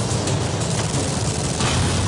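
Gunfire and action sound effects in a dense film-trailer mix over music, with a sharp burst of noise near the end.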